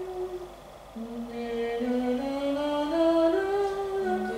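A woman's voice singing a slow melody unaccompanied: a held note at the start, a short pause, then notes climbing step by step from about a second in.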